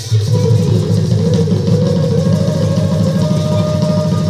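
Khol barrel drums played in a fast, dense roll, with a single long held note sounding above them and rising slightly.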